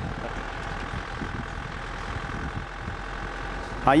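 Vehicle engine running steadily as the vehicle drives along a dirt track.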